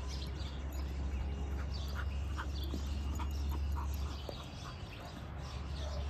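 Faint, short bird chirps scattered every half second or so over a steady low rumble.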